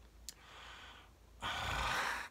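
A man's breath: a small mouth click, a faint inhale, then an audible sighing exhale about one and a half seconds in.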